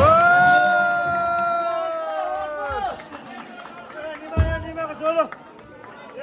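A man in the audience whooping: one long held whoop lasting nearly three seconds, then quieter, with a thump and short shouts about four and a half to five seconds in.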